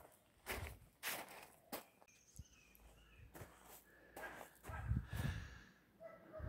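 Faint footsteps on a gravel path, a soft step roughly every half second to a second, with a few slightly louder steps near the end.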